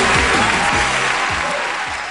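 A live audience applauding while the band plays on, with a beat of low drum hits under the clapping. The sound begins to fade near the end.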